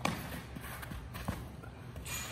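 A baseball smacks into a leather fielding glove as a ground ball is fielded, followed by a few light steps and shuffles on artificial turf as the fielder sets his feet to throw.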